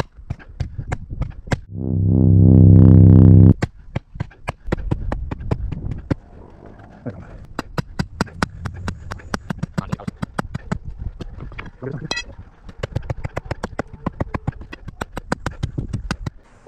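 Sledgehammer blows driving a stake into the ground at the edge of a concrete slab, a long run of sharp knocks. About two seconds in there is a loud, low, steady buzzing tone lasting about a second and a half.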